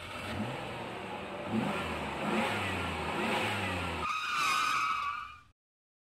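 Vehicle engine revving up several times in rising sweeps. It gives way about four seconds in to a steady higher tone with a hiss, then cuts off, leaving silence for the rest.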